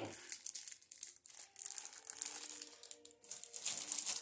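Clear plastic wrapping crinkling irregularly as a pair of silicone hot mats is handled and turned over.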